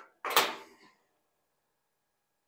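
One short knock and scrape of the flattened copper backing piece, used to stop the weld falling through, being handled against the freshly welded steel panel.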